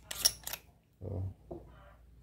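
Battery cap on the handle of a FeiyuTech AK4500 gimbal being twisted open: three short rubbing strokes of its screw thread in the first half-second, then quiet handling.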